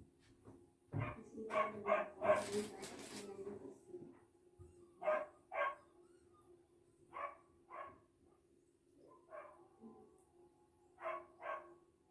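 A dog barking in pairs of short barks, three pairs about half a second apart within each pair, over a steady low hum.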